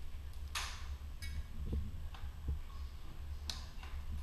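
Airsoft gunfire: a few single sharp clicks spaced irregularly, the loudest about half a second in and another near the end, over a steady low rumble.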